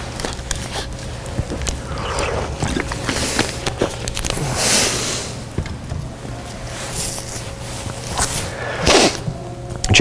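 Bible pages being turned and handled at a pulpit: scattered light crinkles and rustles, with two louder page swishes, one around the middle and one near the end. A steady low electrical or room hum runs underneath.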